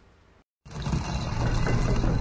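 Intro sting sound effect of turning, grinding gears and ratchets, starting suddenly about half a second in after a moment of silence.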